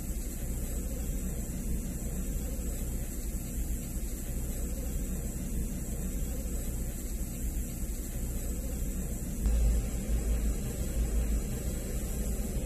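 2019 Dodge Grand Caravan's engine idling, heard inside the cabin as a low steady rumble that grows louder about nine and a half seconds in.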